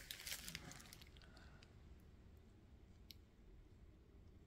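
Near silence: room tone, with faint rustling and small clicks at the start and one more small click about three seconds in.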